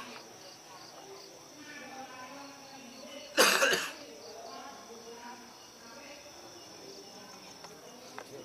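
Crickets chirping steadily under faint murmuring voices, with one loud, short cough about three and a half seconds in.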